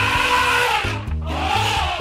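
Elephant trumpeting sound effect: two calls of about a second each, rising then falling in pitch, over background music.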